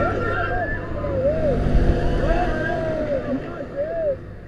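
Riders on a spinning fairground thrill ride shrieking and whooping in short cries that rise and fall in pitch, over a steady low rumble of the moving ride.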